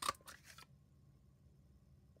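A handheld paper punch snapping down through a strip of cardstock, one sharp crunch followed by a few smaller clicks within the first half second as the punch springs back.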